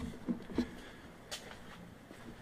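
Quiet garage room tone with faint handling noise and a few light clicks, the sharpest a brief tick about a second and a half in.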